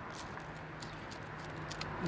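A person chewing a mouthful of chips close to the microphone: irregular small clicks and crunches over a faint steady low hum.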